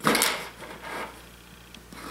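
Plywood puzzle-box lid pivoting, wood sliding over wood in a short scrape at the start and a softer rub about a second in.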